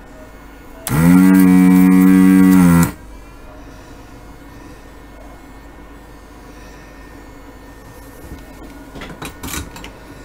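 A loud, steady machine hum lasting about two seconds, starting about a second in. It rises briefly in pitch as it starts and sags as it stops. A few light clicks follow near the end.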